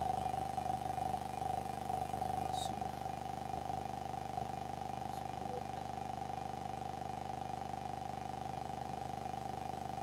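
Steady electrical hum and hiss with a constant mid-pitched tone from the audio chain, running without its main microphone, whose battery has gone flat. A couple of faint clicks sound early on while another mic is being plugged in.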